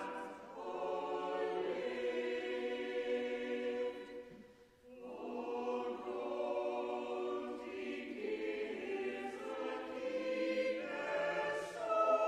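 Church choir singing sustained notes in a reverberant stone church, breaking off briefly about four seconds in between phrases before singing on.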